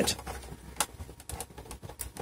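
Scattered small clicks and taps of a hard-disk caddy being handled in its bay, as fingers work behind it towards the drive's SATA connector.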